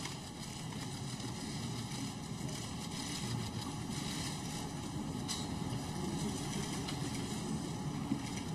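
Steady low room noise of a large hall with a seated audience, with a faint tap about five seconds in.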